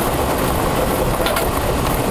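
Lottery draw machine running with a steady blowing noise, with a couple of light clicks about two thirds of the way in as balls knock inside the clear acrylic chambers.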